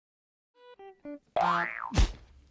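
Cartoon-style comedy sound effects: three short notes stepping down in pitch, then a loud springy boing that rises and falls in pitch, ending in a quick falling swoop.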